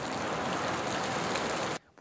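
Steady noise of heavy wind and rain, like being battered by driving rain on a hillside, which cuts off suddenly just before the end.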